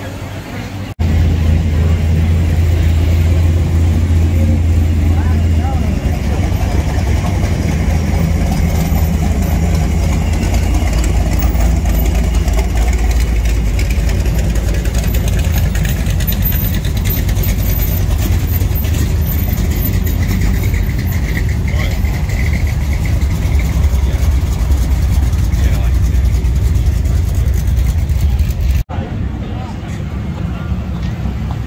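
A Chevrolet Chevelle's V8 engine idling loudly with a deep exhaust rumble as the car rolls slowly past. The steady low note shifts lower about five seconds in.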